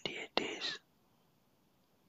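A person whispering for under a second, trailing off into near silence with only faint room tone.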